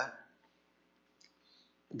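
Near silence in a pause between a man's spoken sentences, with a couple of faint short clicks a little past a second in.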